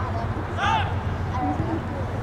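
Players or spectators shouting across a soccer field: one high-pitched yell about two-thirds of a second in, then shorter calls, over a steady low rumble.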